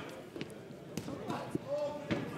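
A few sharp thuds of gloved punches landing during a boxing exchange, spaced about half a second apart.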